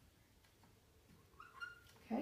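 Near silence while a dry-erase marker writes on a whiteboard, with a brief faint high squeak near the end.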